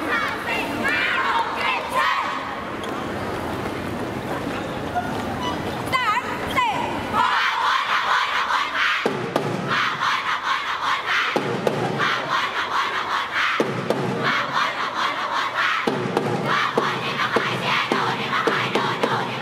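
A large group of schoolgirls shouting a cheer together. After a stretch of mixed shouting, from about seven seconds in it settles into a chant of repeated phrases, each about two seconds long.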